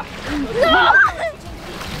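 Water splashing and sloshing against the side of a small motorboat as an octopus is grabbed from the sea, under excited voices exclaiming.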